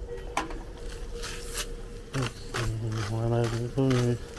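A man's voice making a drawn-out, wordless vocal sound in the second half, with a sharp click near the start and two short scraping strokes about a second in, over a faint steady tone.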